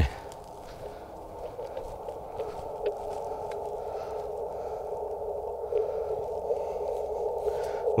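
Receiver hiss of the 40-meter band from an Icom IC-705 transceiver's speaker. It is held to a narrow pitch range by the radio's CW filter and grows gradually louder.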